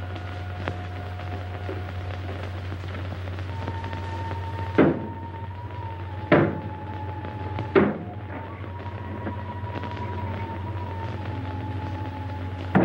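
Three gunshots about a second and a half apart, each a sharp crack, over held notes of the film score and a steady low hum.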